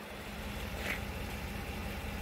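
Low, steady rumble of wind buffeting the microphone, with a faint steady hum under it.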